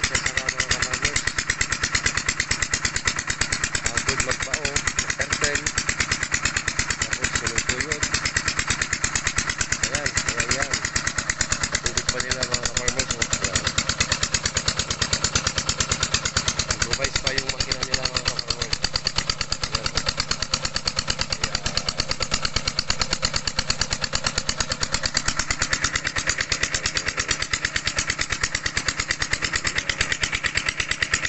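Small engine driving an irrigation water pump, running steadily with an even, fast firing beat, with water rushing from the pump outlet.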